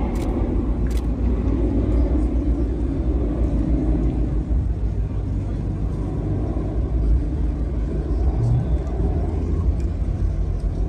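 Outdoor crowd ambience: a steady low rumble with indistinct murmuring voices, the murmur easing about halfway through.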